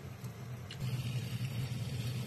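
Bacon-wrapped chicken frying under a plastic bowl on a makeshift hot-plate skillet: a faint steady sizzle over a low steady hum, growing slightly louder about a second in.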